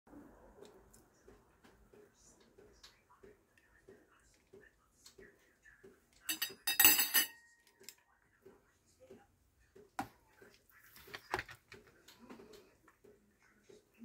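Kitchen tongs and forks clinking against ceramic plates and a plastic colander while spaghetti is served: light scattered clicks, a loud burst of clattering with a ringing metallic clink about halfway through, and two sharp knocks a few seconds later.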